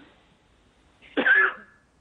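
A single short cough heard over a telephone line about a second in, with near silence either side.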